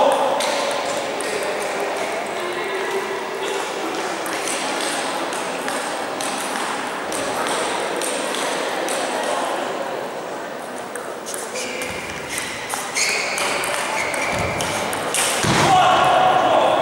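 Celluloid-style table tennis ball clicking off paddles and bouncing on the table during a point, a string of short sharp ticks that grows busier in the last few seconds, with echo from a large sports hall.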